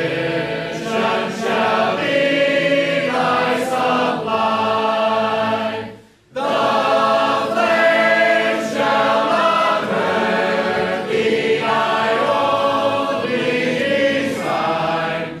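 A church congregation singing a hymn together a cappella. The many voices hold long notes, pause briefly about six seconds in between lines, then go on.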